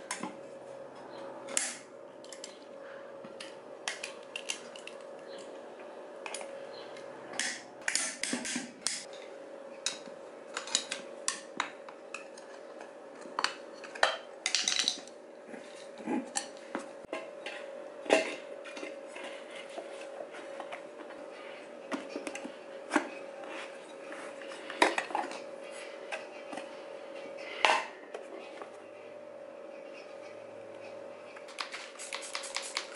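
Metal clinks, scrapes and knocks of hand tools and wheel parts: a flat-head screwdriver prying a mini bike tire's bead off its steel rim, and bolts and parts set down on concrete. The sounds come as scattered single clicks over a faint steady hum.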